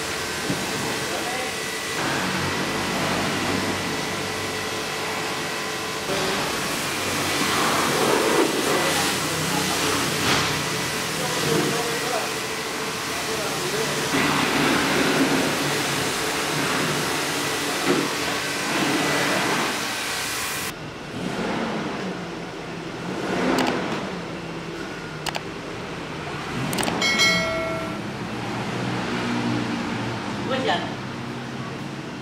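High-pressure washer jet spraying water onto a foam-covered car body, a steady loud hiss with the spray spattering off the panels. It cuts off abruptly about two-thirds of the way through, leaving quieter yard sounds with a few knocks and a brief pitched tone near the end.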